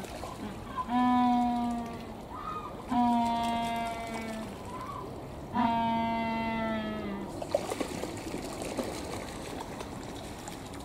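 A penguin braying: three long calls, each held on one pitch and sinking slightly at the end, with short squeaky notes between them. Under them water trickles steadily, and near the end a swimming penguin splashes in the pool.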